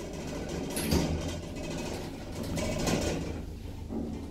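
Ace Elevators passenger lift car travelling upward: a steady low running hum from the moving car and its machinery, with a short knock about a second in.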